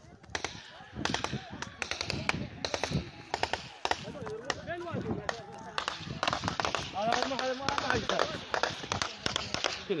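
Gunfire: many shots in quick, irregular succession, with men shouting among them, recorded on a phone during an armed tribal clash.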